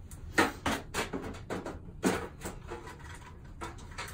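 Plastic containers and supplies knocking and clattering as they are set down and moved about on a rolling utility cart: a quick run of sharp knocks in the first two and a half seconds, then quieter rummaging.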